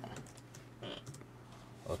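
A few faint keystrokes on a computer keyboard while code is being typed.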